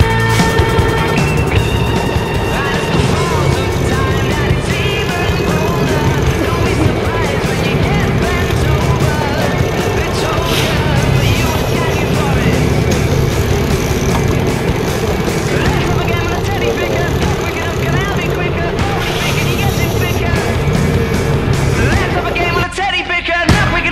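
A boat engine running steadily under loud wind and water noise on deck, with faint voices mixed in.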